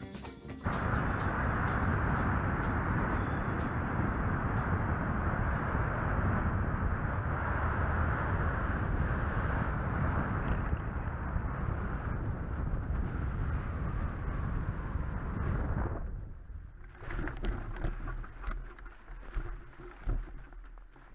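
Airflow buffeting the hang glider's frame-mounted camera microphone in flight, a loud steady rush. About four seconds before the end it drops away sharply as the glider slows and touches down, leaving quieter, uneven noises.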